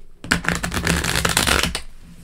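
A deck of tarot cards riffle-shuffled by hand: a rapid flurry of flicking card edges that starts about a third of a second in and lasts about a second and a half.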